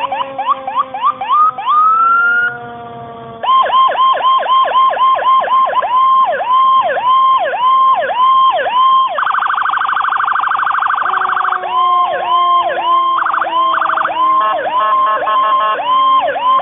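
Fire engine's siren being tested, switching between tones: a fast yelp, then about a second and a half in a rising wail, and after a short lull a steady yelp of roughly three sweeps a second. About nine seconds in it changes to a very rapid buzzing warble for two seconds or so, then back to the yelp, with a lower tone slowly falling in pitch underneath.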